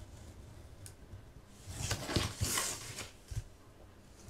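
Scissors snipping paper and the paper rustling as the corners of the wraparound paper around a chipboard clipboard are mitered: a short cluster of snips and rustles in the middle, with a light click before and after.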